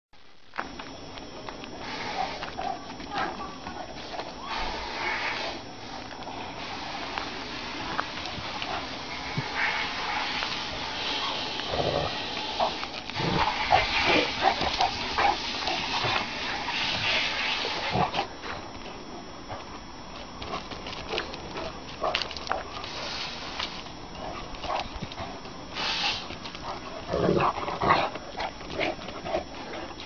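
Kangal shepherd dogs play-fighting, with their vocal sounds and irregular scuffling noises throughout, louder and busier in the middle stretch.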